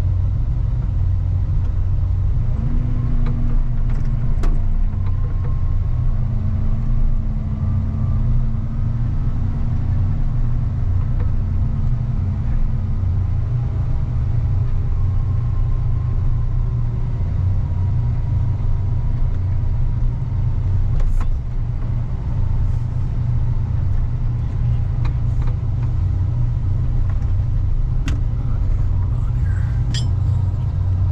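Snow plow vehicle's engine running steadily under load as its front blade pushes slush along the road: a continuous low rumble, with a humming tone over it for the first dozen seconds or so and a few scattered sharp knocks.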